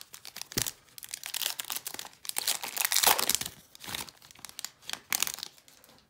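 A trading-card pack's wrapper crinkling and tearing as it is ripped open, in irregular crackles that are loudest about three seconds in.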